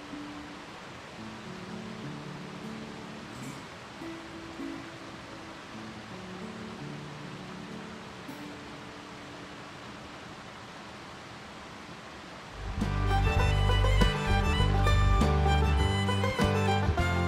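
Background music: soft, slow held notes over a steady rush of falling water. About twelve and a half seconds in, much louder, busier music comes in.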